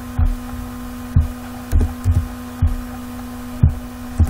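A steady electrical hum from the recording setup, with about six soft low thumps at uneven spacing: keyboard and mouse clicks carried through the desk to the microphone as quotes are retyped.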